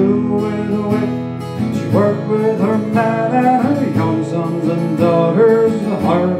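Acoustic guitar strummed steadily, with a man singing over it, holding and bending long notes.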